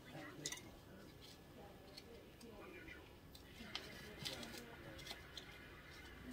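Faint, low speech in the background with a few light, sharp clicks of metal dental hand instruments being handled.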